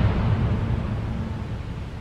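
A low rumble with a hiss over it, slowly fading away.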